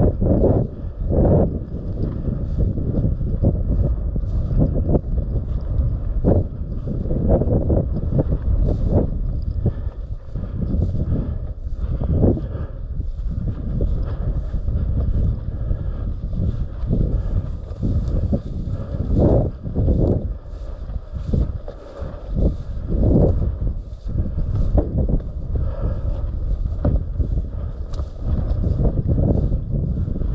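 Wind buffeting the microphone: a loud low rumble that swells and drops in irregular gusts, with faint rustles of dry grass as the wearer walks.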